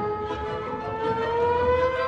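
Solo trombone holding a single sustained note and sliding it slowly upward in a smooth slide glissando, settling on the higher note near the end.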